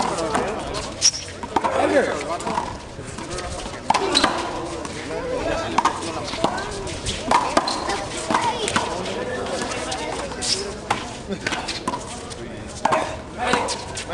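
Big blue rubber handball being slapped by hand and bouncing off concrete walls and floor in a rally: irregular sharp knocks, one every second or two, with players' voices in between.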